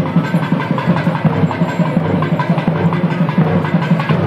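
South Indian temple music: a thavil drum beating a fast, steady rhythm, with the reedy tones of a nadaswaram faintly above it.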